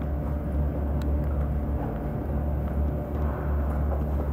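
A low, steady rumbling drone with faint held tones above it, typical of an ambient score in a thriller. There are a few faint clicks about a second in.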